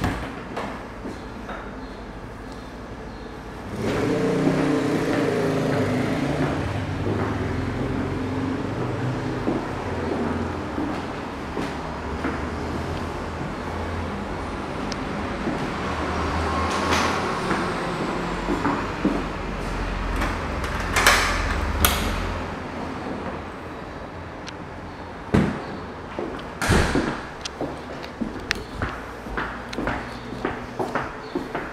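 A low engine rumble, typical of a heavy road vehicle, starts about four seconds in and runs for some twenty seconds, then fades. Near the end come a few sharp knocks and clicks.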